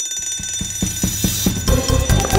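An alarm bell ringing steadily and stopping about three-quarters of the way through, over a run of thumps that come faster and faster.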